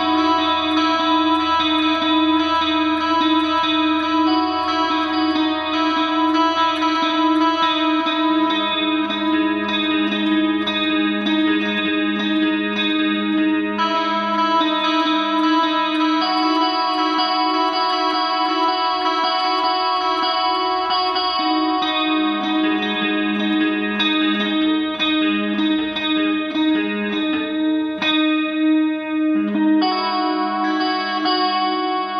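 Electric guitar played through effects: a slow melody of picked notes ringing over long sustained tones.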